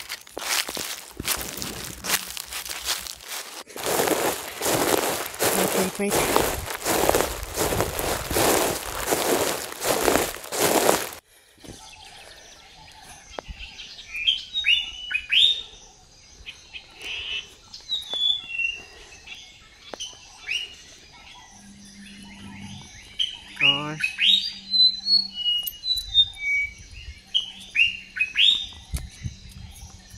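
Footsteps tramping through long grass and undergrowth, a dense run of rustling crunches, for about the first eleven seconds. These stop abruptly and give way to birds singing: repeated short chirps and gliding whistles.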